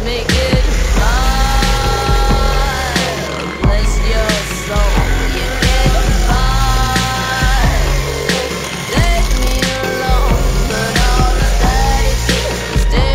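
Background music with a heavy, stepping bass line and a held melody phrase that comes in twice, about a second in and again about six seconds in.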